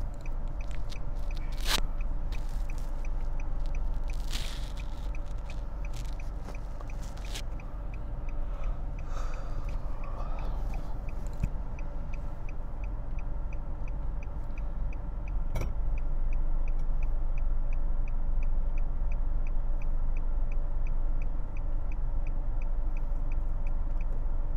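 Inside a moving Nissan sedan: a steady low rumble of engine and road, with the turn-signal indicator ticking about twice a second. A few short knocks come in the first half.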